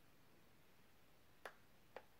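Near silence: room tone, with two short faint clicks about half a second apart near the end.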